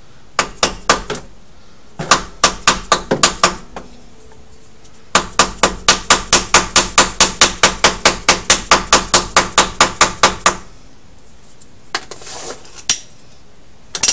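Ratchet wrench clicking as it loosens the 3/8-inch square drain plug of a rear differential. There are a few short runs of clicks, then a long, even run of about five clicks a second.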